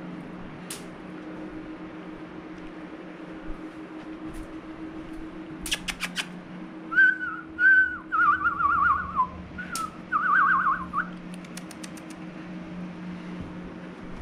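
A person whistling: a held note, then a few seconds of warbling, trilling whistles, over a steady low hum. A few quick clicks come just before the whistling.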